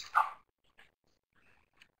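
The last syllable of a spoken word trails off in the first moment, then near silence: room tone with a couple of faint ticks.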